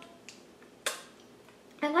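A single sharp click about a second in, as the NARS Radiant Creamy Concealer tubes are picked up and knock together in the hand.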